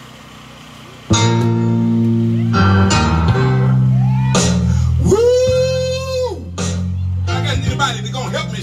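Live gospel band starting a song: after a brief lull, guitar and bass guitar chords come in suddenly about a second in and are held loud. A long held note that slides up at its start and down at its end sounds over the band around the middle.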